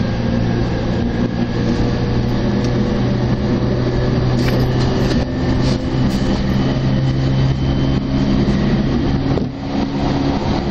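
Inside the carriage of a JR Chuo-Sobu line electric commuter train running along the line: steady rumble of wheels on rail with a steady low electric hum from the train. Near the end the sound dips briefly as a train starts to pass close alongside on the next track.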